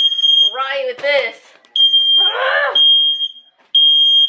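Household smoke alarm going off, set off by smoke from burnt bread: a loud, high-pitched steady tone in long blasts that break off and restart. A voice cries out twice between the blasts.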